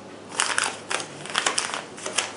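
Small paper packets of sterile non-woven sponges crinkling and rustling in the hands as they are handled and set down on the table, an irregular series of crackles beginning about half a second in.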